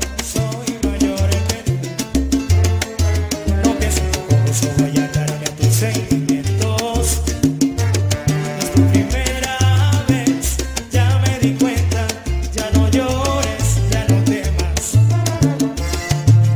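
Salsa music in an instrumental stretch without singing: a bass line stepping through short notes under a steady percussion rhythm, with sustained melodic lines above.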